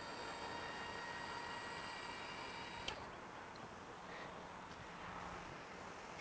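Electric engine-hatch lift motor on a boat whining steadily as the hatch rises, then stopping with a small click about three seconds in. Faint hiss follows.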